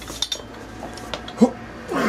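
A few light metallic clinks from a stack of iron weight plates on a loading pin and its steel carabiner as they are handled.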